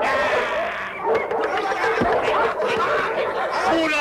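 Cartoon character voices snickering and laughing.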